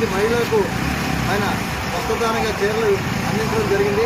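A man speaking Telugu continuously, with steady road traffic noise behind.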